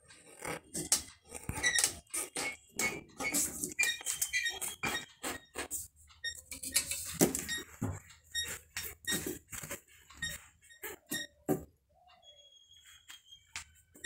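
Writing strokes on a sheet of paper lying on a tabletop: irregular scratching and tapping, with a few short squeaks, easing off and growing quieter near the end.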